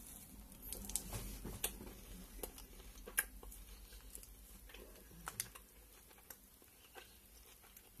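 Quiet chewing of a bite of a Lion bar, chocolate-covered wafer with crisped rice and caramel, heard as scattered small crunchy clicks that thin out after about six seconds.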